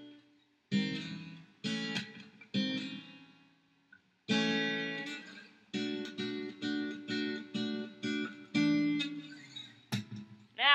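Acoustic guitar strumming a slow progression of minor-seventh and major-seventh chords, each chord struck and left to ring out. Three chords come about a second apart, then a short pause, then a longer ringing chord followed by quicker strokes.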